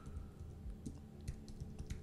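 Typing on a computer keyboard: a quick run of faint, irregular keystrokes as a search phrase is entered.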